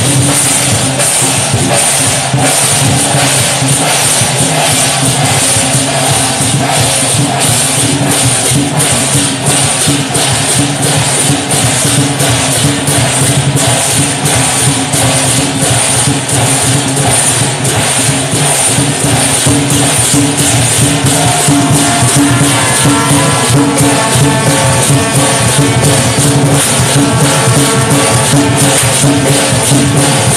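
Loud procession music: steady drumming with a continuous clash of metal percussion, and a held melodic line joining about two-thirds of the way through.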